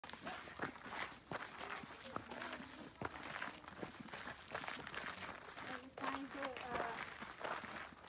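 Several people's footsteps on a rocky dirt trail, an irregular run of short scuffing steps, with indistinct voices talking now and then.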